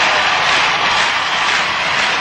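A loud, steady hiss of noise like static, with no tone or rhythm in it.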